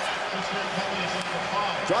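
Sounds of play on an ice hockey rink: skates on the ice and sticks handling the puck, over a steady hum from a nearly empty arena with little crowd noise.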